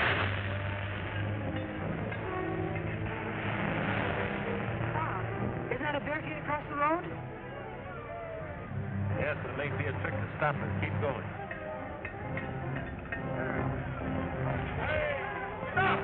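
Orchestral film score, with voices calling out over it at moments.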